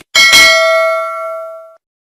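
Notification-bell sound effect: a bell struck twice in quick succession, ringing and fading out over about a second and a half.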